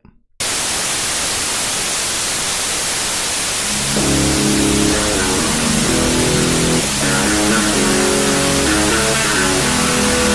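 Loud, steady television static hiss that cuts in suddenly. About four seconds in, music with a repeating low line and chords starts up over the static.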